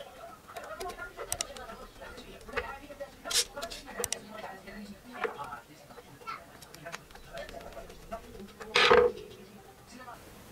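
Small plastic clicks and handling noises as an earbud charging case, its circuit board and small lithium battery are fitted together by hand, with one louder handling noise near the end.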